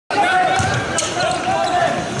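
Live sound of a basketball game in an arena: voices and crowd noise over the play on court.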